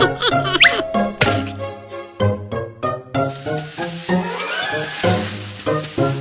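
Bouncy cartoon background music with plucked notes. A few quick gliding squeaky sound effects come near the start, and a long hissing, sliding sound effect runs through the second half.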